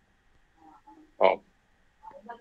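A person's voice giving one short 'oh' about a second in, with quiet gaps before and after it.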